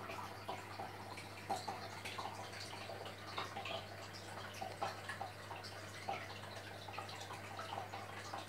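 Quiet aquarium water trickling and dripping at the tank's surface, irregular little splashes over a steady low hum.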